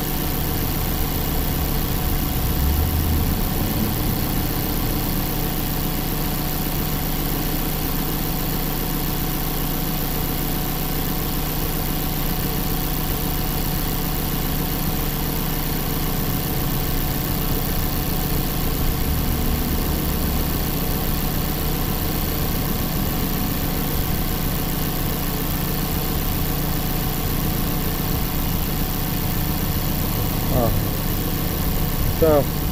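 2014 Mazda CX-5's 2.5-litre four-cylinder engine idling steadily, running much better after work on a cylinder 2 misfire.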